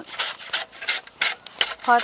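Stiff plastic brush scrubbing a weathered wooden bee-box board in quick back-and-forth strokes, about five a second, brushing off dirt and old debris.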